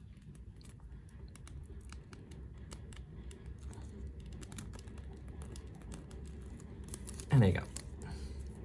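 Irregular small clicks and taps of hard plastic as a translucent plastic ring accessory is pressed and worked onto the Revoltech joint pegs of an action figure's head, a tight fit.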